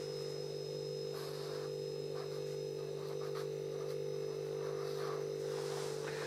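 Steady low electrical hum, with a few faint scratching strokes as a hand draws an arrow on the writing surface.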